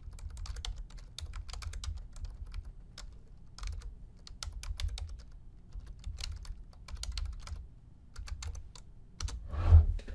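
Computer keyboard keys clicking in short, irregular runs as a country name is typed, with a louder knock just before the end.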